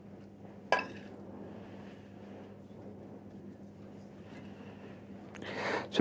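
A metal spoon clinks once against a china plate with a short ringing tone, followed by quieter spooning of soft food onto the plate over a low steady hum.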